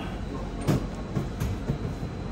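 A sightseeing boat's motor and hull heard from inside the wheelhouse: a steady low rumble while cruising slowly, with a few knocks, the sharpest under a second in.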